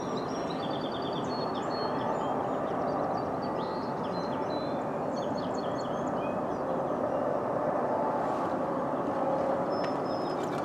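Long double-stack intermodal freight train rolling away on the rails, a steady rumble of steel wheels on track. Small birds chirp on and off over it.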